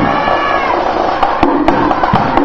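Kazoo marching band (kazobos) sounding a held, buzzing note that bends in pitch while the drums drop out; the percussion beat comes back in about a second and a half in.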